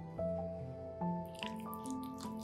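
Soft instrumental background music with held notes. About one and a half seconds in, wet squelching clicks begin as a silicone spatula works through a thick yogurt and mayonnaise sauce.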